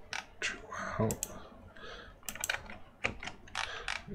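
Irregular, scattered clicks and taps from a computer keyboard and mouse as the Task Manager process list is worked through.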